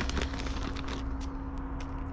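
Plastic potting-soil bag crinkling and soil rustling as a handful of soil is scooped out, heard as a few short, scattered crackles over a steady low hum.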